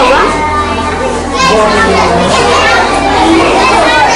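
Many schoolchildren's voices at once in a crowded classroom: a loud, continuous babble of young children talking and calling out.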